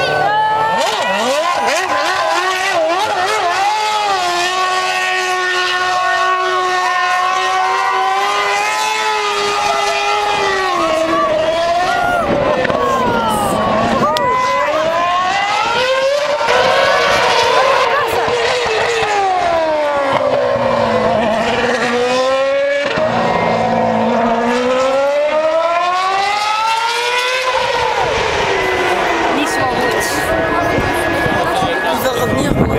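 Open-wheel racing car's engine at high revs, its note held steady at first, then falling and rising again several times as the car slows and accelerates.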